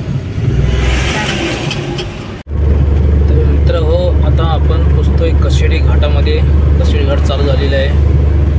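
Steady low road and engine drone inside a car cruising on a highway, with a voice or singing faintly over it. It follows an abrupt cut about two and a half seconds in; before the cut there is a hissy mix of traffic noise beside idling trucks at roadworks.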